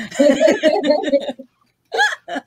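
A woman laughing in choppy bursts for about a second and a half. After a brief pause, more laughter starts right at the end.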